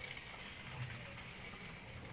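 Water poured from a plastic cup into a glass mug, a faint thin trickle with a few small clicks.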